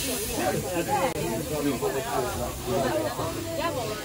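Steady hiss of steam from the Puffing Billy narrow-gauge steam locomotive, under the chatter of several passengers around an open carriage.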